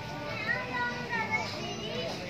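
High-pitched children's voices calling out while playing, rising and falling in pitch.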